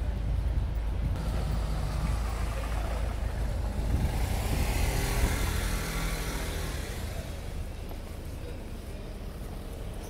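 A car driving past, its engine and tyre noise building to a peak about five seconds in and then fading, over a steady low rumble.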